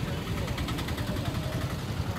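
Street ambience by a busy road: a steady low rumble of traffic and vehicle engines, with faint voices in the background.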